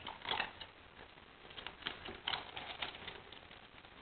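English Setter puppy chewing and mouthing a food treat taken from a hand: faint, irregular clicks and smacks, a few near the start and a run around the middle.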